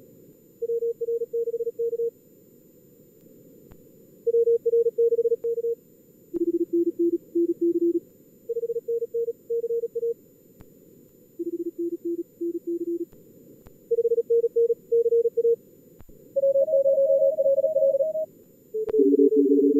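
Morse code (CW) tones from a simulated contest exchange at around 38–45 words per minute. Short keyed groups alternate between two pitches as the two radios take turns, with a higher-pitched group near the end. Soft receiver hiss fills the gaps.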